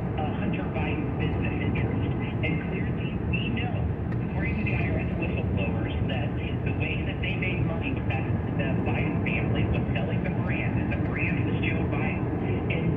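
Steady road and engine noise inside a car's cabin while cruising on a highway, an even low rumble of tyres on pavement, with muffled talk from the car radio underneath.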